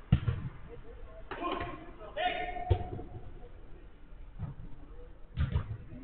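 Sharp thumps of a football being struck on an artificial-turf pitch: a loud one right at the start, another near the middle and one near the end. Players shout in between.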